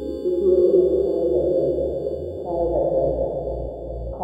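Progressive psytrance: held, ringing synth tones over a pulsing electronic bassline, with falling synth phrases entering about half a second in and again about two and a half seconds in, where the bass also grows stronger.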